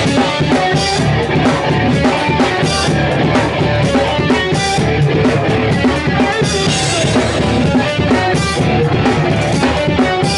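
Hardcore punk band playing live at full volume: drum kit with cymbal crashes, electric guitars and electric bass, heard close to the drums.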